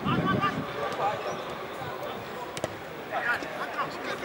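Football players shouting and calling to each other on an open pitch, in short bursts, with a single sharp thud of a football being kicked a little past halfway.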